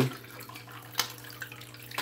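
Aquarium water trickling steadily under a low hum, with a single click about a second in.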